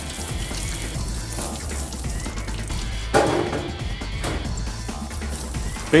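Water from a sink spray nozzle running over handgun parts into a stainless steel sink, rinsing off the ultrasonic cleaning solution, with background music underneath.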